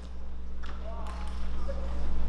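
A microphone stand being handled on stage: a few sharp knocks and clicks over a steady low electrical hum from the sound system, with faint voices in the background.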